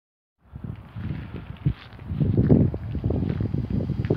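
Wind buffeting a phone microphone outdoors, an uneven low rumble that starts about half a second in and surges in gusts, with some handling noise.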